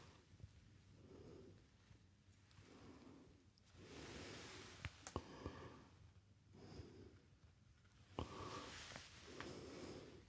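Faint, soft rustling and brushing of a latex-gloved hand working close to the microphone. It comes in slow swells every second or two, with a few light clicks.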